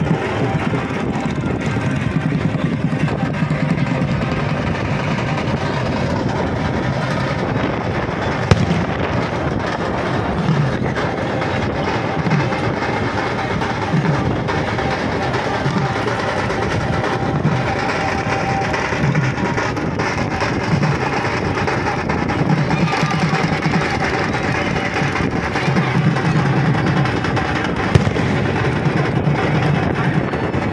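A village festival band's drums and music playing continuously amid crowd noise, with a couple of sharp bangs, one about eight seconds in and one near the end.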